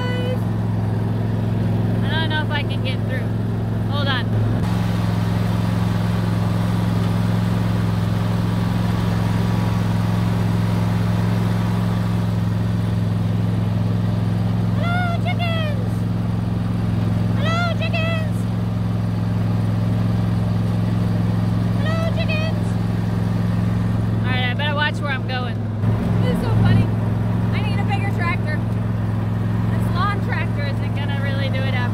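Engine of a small farm tractor running steadily as it drives along, its pitch shifting slightly a few seconds in and faltering briefly with a couple of bumps near the end. Short high-pitched calls sound over it several times.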